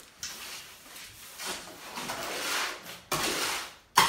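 Steel shovel scraping and scooping wet concrete in a plastic mixing tub: several scraping strokes about a second each, then a sharp knock at the end.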